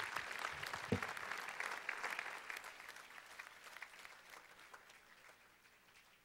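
Audience applauding, the clapping dying away gradually over the few seconds, with a single low thump about a second in.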